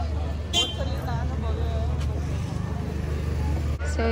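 Busy street ambience: a steady low traffic rumble with people's voices talking in the background. The sound breaks off briefly near the end.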